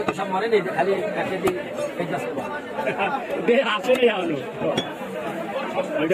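Several people talking over one another in the background, with a few short sharp clicks.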